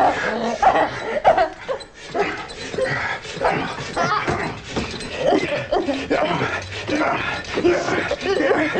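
A dog barking and yipping amid people's voices.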